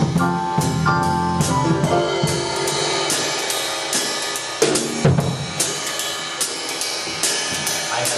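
Jazz drum kit solo played with sticks: quick snare strokes and cymbal hits, with the band's notes dropping out after the first two or three seconds and one heavy low drum hit about five seconds in.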